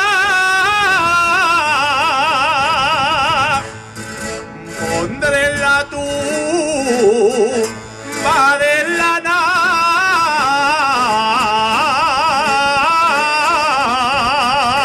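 Male jota singer singing long held notes with a wide, fast vibrato. The voice drops out about four seconds in, leaving a few quieter seconds, and comes back in about eight seconds in.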